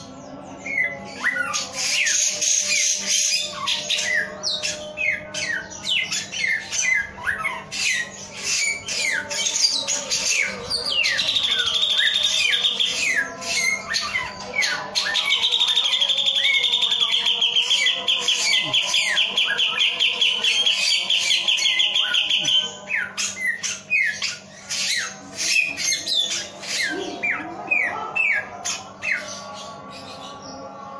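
Caged male samyong singing: a string of quick downward-sweeping whistled notes, broken through the middle by two long, fast, even trills, over a faint steady low hum.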